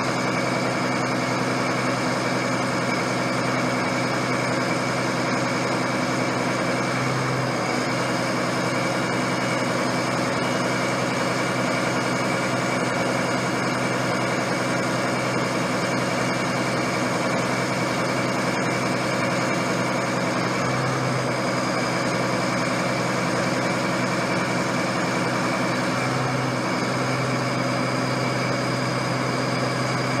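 Ingersoll-Rand LME500C drill rig running steadily at idle, its drifter not yet working: a constant engine drone with a high whine over it, unchanged in speed throughout.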